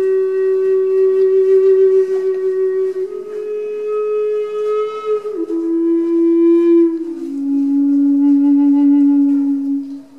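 Native American wooden flute playing a slow melody of long held notes, each with its clear overtones. The tune steps up once about three seconds in, then steps down twice to a low note that is held near the end.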